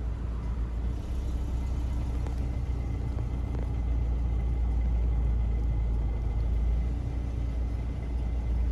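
Skoda Octavia's 1.6 engine idling, heard from inside the cabin as a steady low rumble.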